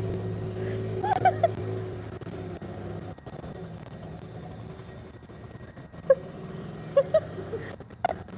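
Small 1982 Honda motorcycle engine running steadily as the bike rides away, its hum fading over several seconds. Short bursts of voices or laughter come about a second in and near the end.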